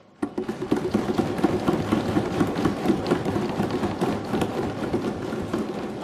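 A hall full of people applauding, a dense, steady patter of many hands and desks that starts just after the speaker's words of congratulation end.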